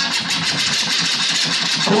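Cumbia DJ mix at a transition: a dense, rattling noise with a fast, even pulse takes over from the tune while the DJ works the controller's jog wheel.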